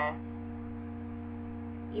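A steady electrical hum made of several constant low tones, unchanging throughout, in a pause between speech.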